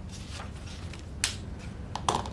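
Paper notebook pages being handled with a soft rustle, then one sharp click a little over a second in, over a low steady room hum.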